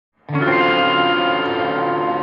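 Song intro: an electric guitar chord, heavily effected with chorus and distortion, starts about a third of a second in and rings on steadily.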